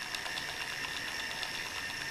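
Small electric motor driving a homemade hinge exerciser, its eccentric crank and connecting rod flexing a tight brass hinge back and forth to loosen it. A steady mechanical running sound with a faint high whine and fine rapid ticking.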